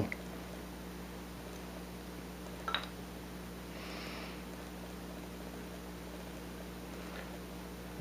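Quiet handling of a hand-carved bar of soap over a steady low electrical hum: a small click a little under three seconds in, and a soft brushing sound about four seconds in.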